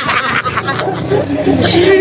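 A group of men laughing and talking over one another.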